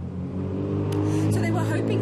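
A steady low hum like a vehicle engine running, with speech starting under it about a second in.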